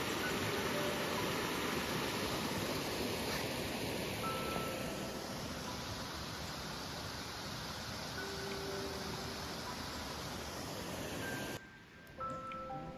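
Mountain stream rushing over rocks and a small waterfall: a steady wash of water noise, with a few faint short tones over it. It cuts off just before the end.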